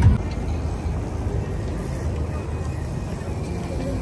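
Busy city-street traffic: a steady low rumble of passing vehicles, with music in the background.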